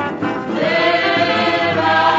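A 1949 samba recording with a regional ensemble accompaniment, played from an old 78 rpm disc. Long held melody notes sound over the accompaniment.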